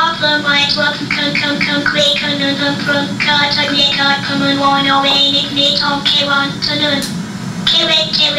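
NETtalk neural network's synthesized speech output played back: a machine voice stringing syllables together on one steady pitch, from the network after 20 training passes through a 500-word corpus.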